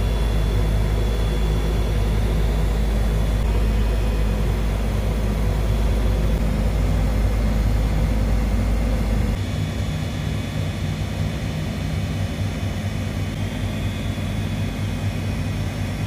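Steady mechanical drone of nearby air-conditioning outdoor units running, with a steady low hum. A heavy low rumble underneath stops about nine seconds in, leaving the drone a little quieter.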